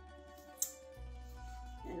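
Background music with a steady low bass, and one sharp knock a little over half a second in: a chef's knife chopping basil on a wooden cutting board.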